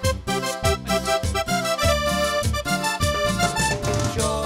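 Cumbia band playing live: an instrumental stretch of keyboards over a steady, repeating bass-and-percussion beat, with no singing.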